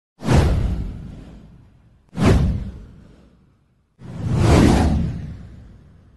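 Three whoosh sound effects about two seconds apart, each a rush of noise that fades away over a second or two. The first two hit suddenly; the third swells up over about half a second before fading.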